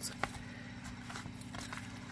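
Faint handling noise of lace trim being wiggled and pulled through the punched hole of a paper tag, with one light click about a quarter second in, over a steady low background hum.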